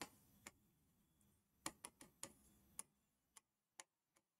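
Faint, irregular ticks of a stylus tapping the glass of an interactive display as a word is hand-written, about nine small clicks over near silence.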